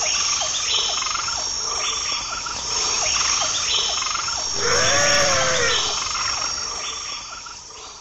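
A nature chorus of insects and frogs: a steady high-pitched insect trill with short frog calls repeating about every second. About five seconds in comes one louder, longer call that rises and falls. The chorus fades out at the end.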